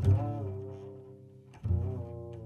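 Jazz double bass played pizzicato: low plucked notes that each fade away, one at the start with a slight bend in pitch and the next about a second and a half later.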